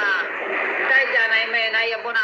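A man talking, heard through a device's speaker.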